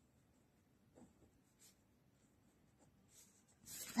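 Faint scratching of a pen writing a word on paper, in a few short strokes.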